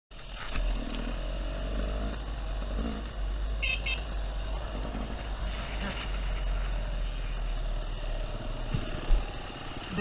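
Beta enduro motorcycle's engine running at low speed, heard from the rider's helmet camera with a heavy low wind rumble on the microphone. A single sharp knock near the end.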